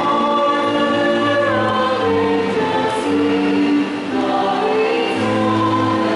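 Church choir singing a hymn in long held notes.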